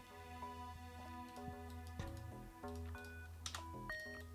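Faint background music of steady held notes that change pitch in steps, with a few soft computer-keyboard key clicks from typing.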